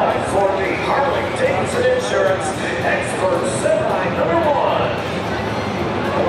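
Speech throughout: a voice talking, with the words not made out, over a steady background din.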